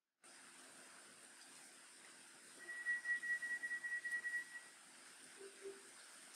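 Faint background hiss with a single steady high-pitched tone, pulsing in loudness, that lasts about two seconds in the middle, followed by two short low blips near the end.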